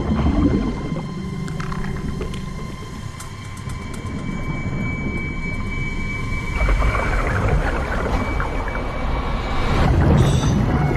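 Underwater film sound: a steady drone with held tones over a wash of water noise. A denser hiss of bubbling joins about two-thirds of the way through.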